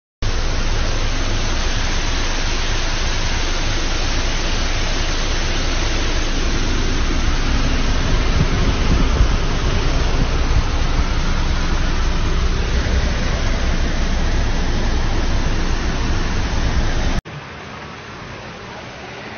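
Heavy rain falling in a downpour, a steady loud rush with a deep rumble underneath. Near the end it cuts off suddenly to a quieter steady hiss.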